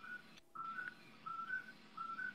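A faint, high whistle-like tone in short two-note figures, each a lower note stepping up to a higher one, repeating about every three quarters of a second.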